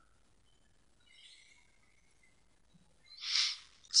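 Near silence with faint room tone and a faint thin tone about a second in, then a short breath drawn in by the narrator near the end, just before he speaks.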